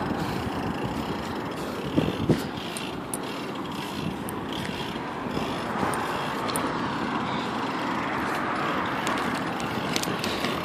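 Steady road and wind noise from a bicycle being ridden on pavement, with light clicks and rattles from the bike and two knocks about two seconds in.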